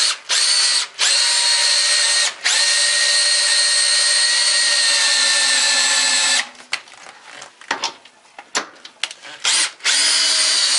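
DeWalt DCD780M2 18V cordless drill-driver driving a long screw into a wooden block. Its motor gives a steady whine in two short bursts, then one long run of about four seconds, then a quick string of brief trigger blips near the end.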